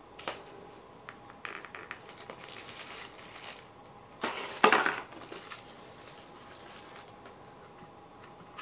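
Plastic packaging being handled: small clicks and light crinkling as a model railway coach is worked out of its clear plastic tray and tissue wrapping, with one louder burst about four and a half seconds in.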